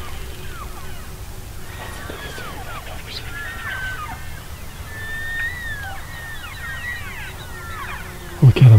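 A herd of elk calling as it runs: many overlapping short, squealing chirps and mews that rise and fall in pitch, with a few longer whistled calls in the middle.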